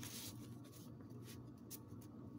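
Faint rustling of a stack of paper cards being handled, a few short strokes of paper on paper, over a low steady hum.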